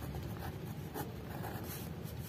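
Pen writing on a paper diary page: faint, soft scratching strokes.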